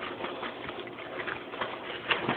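Plastic bag crinkling and rustling in quick irregular bursts as it is grabbed and handled, over a steady background hiss.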